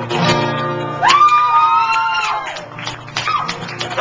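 Acoustic guitar strumming the closing chords of a song and ringing out. About a second in, a high held note slides up, holds for over a second, then falls away as the guitar fades.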